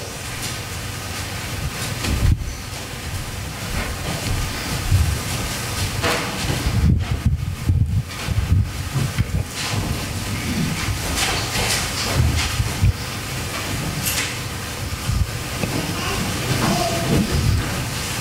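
Steady, hissing room noise with a fluctuating low rumble and a few scattered knocks and rustles while people move about a church sanctuary.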